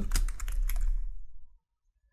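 Computer keyboard typing: a quick run of keystrokes that stops about a second and a half in.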